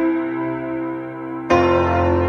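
Background music of sustained keyboard chords slowly fading, with a new chord struck about a second and a half in.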